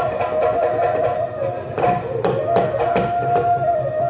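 Live Bihu folk music: dhol drums beating in an uneven pattern under a wind instrument's melody of held notes that step up and down.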